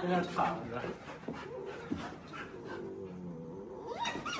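Puppies at play making low, drawn-out vocal sounds.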